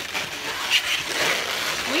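Latex modelling balloons rubbing and squeaking against each other as they are twisted and wrapped by hand, a crackly, scratchy rubbing with a few short squeaks.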